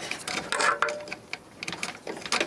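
Handling of an opened boombox's plastic casing and circuit board: scattered small clicks and rattles, with a short rustle about half a second in.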